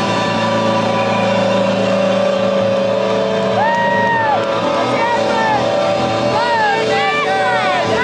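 A sustained amplified electric-guitar drone left over from the band ringing out and dying away over the first few seconds, then women's high-pitched squeals and laughter close to the microphone, one longer squeal followed by a string of short bursts of laughter.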